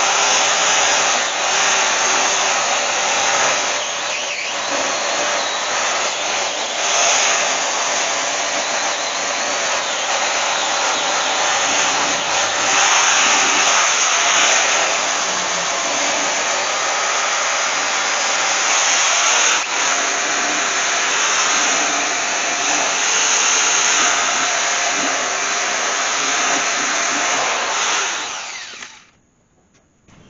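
Corded angle grinder with a wire wheel, its guard removed, running steadily against the cylinders of a cast-iron Mopar 400 engine block, scouring corrosion off the bores and the stuck piston tops; the wheel's pitch and scraping shift as it is pressed into the metal. It winds down and stops near the end.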